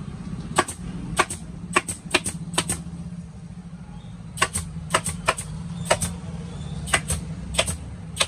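Pneumatic staple gun firing staples through a vinyl seat cover into a motorcycle seat base: about seventeen sharp shots, irregular and often in quick pairs, with a pause of over a second in the middle. A steady low hum runs underneath.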